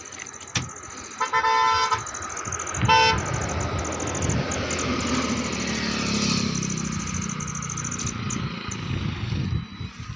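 A vehicle horn sounds twice, a held toot about a second in and a short one about three seconds in. Then a heavily overloaded goods truck's engine and tyres rumble as it pulls off and moves slowly past on a steep uphill grade.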